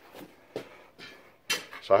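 A few faint, short knocks and clicks of handling while the camera is moved, then a man starts speaking near the end.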